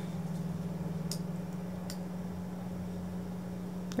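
Steady low electrical hum with a faint hiss behind it, and two faint clicks of a computer mouse, about a second in and again just under a second later.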